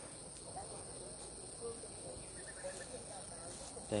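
Faint chirping of crickets and other field insects, with a few scattered short chirps at varying pitch.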